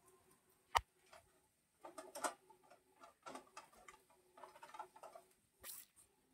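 A single sharp click about three-quarters of a second in, then scattered faint knocks and light clatter of household things being handled.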